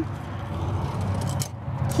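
Electric power-cord rewind reel running steadily with a low hum, winding the 50-foot, 50-amp shore power cord back into its bay.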